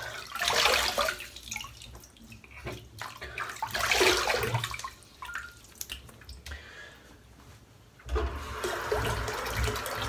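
Water splashing as a freshly shaved face is rinsed at a sink, in two bursts about three seconds apart, then a steadier rubbing noise near the end as a towel dries the face.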